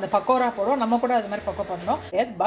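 A woman talking, over a steady background hiss that cuts off abruptly at the end.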